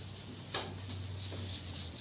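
Steady low hum with a few small clicks, the sharpest about half a second in.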